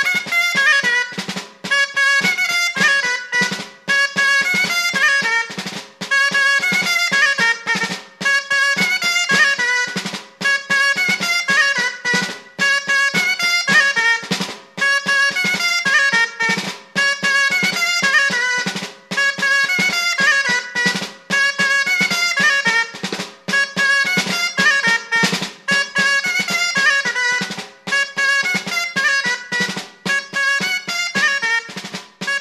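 Aragonese gaita (dulzaina), a wooden double-reed shawm, playing a folk dance tune in phrases with short breath gaps, accompanied by a drum struck in a steady rhythm.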